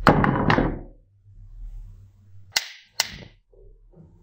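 Ice cubes dropping into an empty drinking glass, clattering against the glass in a quick burst of several hits in the first second. A little past the middle come two sharp, ringing glass clinks about half a second apart.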